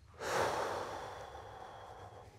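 A person's long, breathy sigh of exasperation, loudest at the start and slowly fading away.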